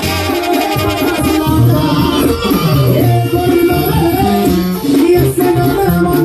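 Live Latin dance-band music played loud through a PA, with a man singing the lead over held bass notes.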